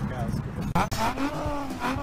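Ford Tourneo Custom's 2.0-litre turbo diesel engine running as the van pulls away, with a low engine note that rises and then slowly falls, under a man's laughter.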